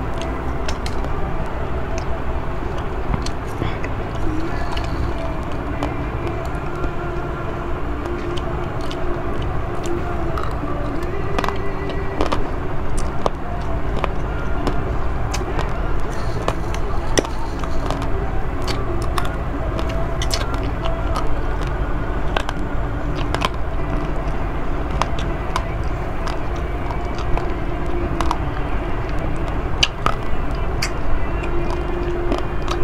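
A metal spoon clicking and scraping against a bowl as rice is scooped and eaten, with irregular sharp clicks over a steady low rumble.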